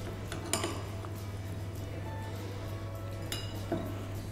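Metal spoon clinking against a small porcelain bowl of coffee while a biscuit is dipped, with a sharp clink about half a second in and a couple more near the end, over quiet background music.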